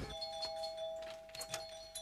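A doorbell ringing: two steady tones sounding together and slowly fading.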